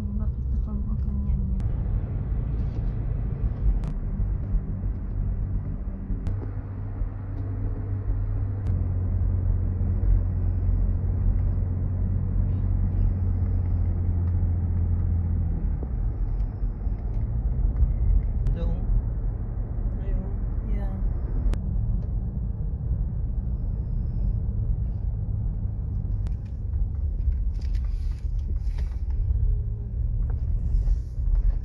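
Car engine and tyre rumble heard from inside the cabin while driving, a steady low drone with the engine holding an even note for about ten seconds in the middle. A few sharp clicks or rattles come near the end.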